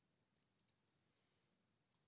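Near silence, with a few very faint mouse clicks about half a second in.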